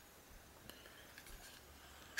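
Near silence: room tone, with a faint tick about two-thirds of a second in.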